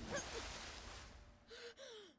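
A cartoon character's breathy gasp: two short vocal breaths near the end, after a rush of noise that fades away.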